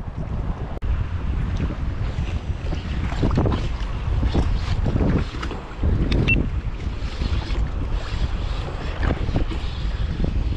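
Wind buffeting the microphone in a steady, gusting rumble, with sea water lapping around a kayak.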